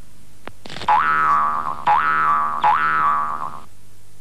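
Cartoon sound effect: three springy boings about a second apart, each jumping up in pitch and then sliding slowly down.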